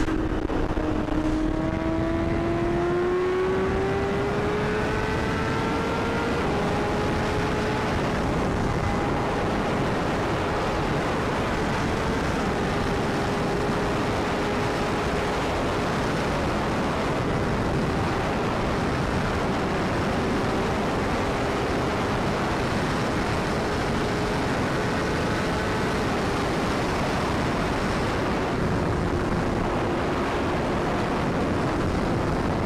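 Sport motorcycle engine heard from the rider's seat, its pitch rising smoothly over the first several seconds as it accelerates, then holding nearly steady at highway speed. Heavy wind rush on the helmet-camera microphone runs underneath.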